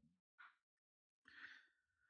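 Near silence, a pause between speech, with one very faint short sound about one and a half seconds in.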